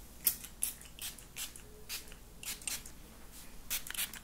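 Small hand-pump spray bottle of essence mist spritzed over and over: a quick series of short, hissy sprays, roughly two or three a second.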